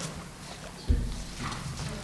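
Sheets of paper being handled and shuffled on a table in front of a desk microphone, with a dull knock on the table about a second in.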